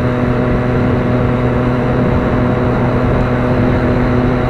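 Inline-four sport motorcycle engine cruising at steady, moderate revs in traffic, a constant drone with wind and road rush on the helmet microphone.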